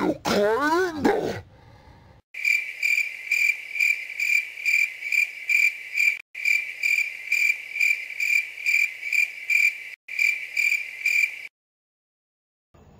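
Crickets chirping, a high chirp repeating about two to three times a second. It starts about two seconds in, breaks off briefly twice and stops shortly before the end: the comic 'crickets' awkward-silence sound effect.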